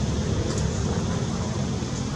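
Steady low rumbling background noise, heaviest in the bass, with no distinct events.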